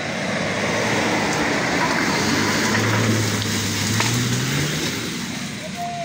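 Pickup truck engine revving under load as it drives away over a rough dirt track, its pitch rising from about halfway through, over a steady rushing noise.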